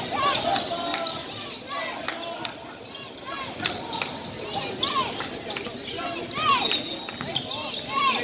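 A basketball being dribbled on a hardwood gym floor, with sneakers squeaking in short rising-and-falling chirps as players move.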